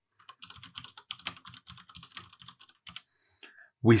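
Typing on a computer keyboard: a quick run of key clicks for about three seconds as a command is entered.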